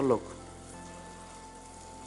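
Faint, steady sizzle of food frying in a pan, following a single spoken word at the start.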